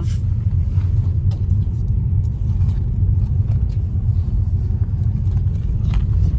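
Cabin noise of a moving car: a steady low rumble of road and engine heard from inside.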